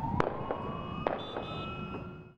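An ambulance siren wailing, its pitch rising slowly, with a few sharp cracks over it. The loudest crack comes about a fifth of a second in and fainter ones follow about a second later.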